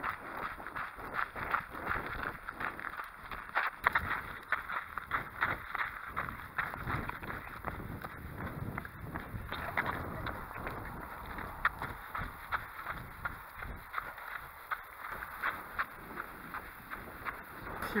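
A trail runner's footfalls on a sandy dirt path, with rustling and rubbing of his pack and hydration tube against the body-worn camera, over wind noise on the microphone.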